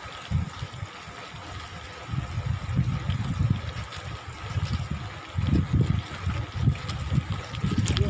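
Wind buffeting the microphone of a camera riding on a moving bicycle, in irregular low gusts that get heavier about two seconds in.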